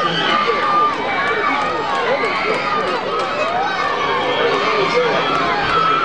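Crowd of spectators' overlapping voices, many talking and calling out at once, with no single voice standing out.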